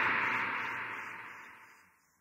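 Hissing white-noise effect, filtered to a mid-to-high band, fading steadily away to silence about one and a half seconds in: a noise fade in the lead-in of an electronic track.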